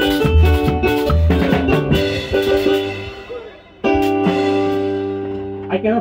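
Live band music from an electronic keyboard and drum kit: rhythmic keyboard chords over drums that die away about halfway through. About four seconds in, a sudden loud final chord with a drum hit is held and slowly fades, closing the song.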